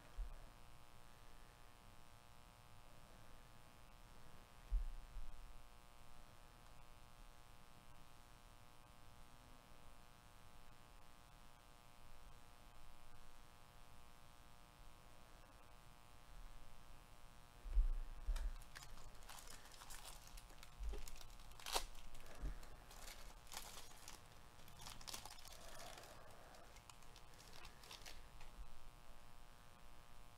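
Quiet handling of trading cards and foil pack wrappers by gloved hands: a few faint thumps, then from about eighteen seconds in, several seconds of crackly rustling, crinkling and card flicks that die away near the end.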